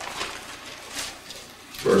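Soft rustling and light taps of paper pages being handled and turned at a lectern, then a man's voice starting near the end.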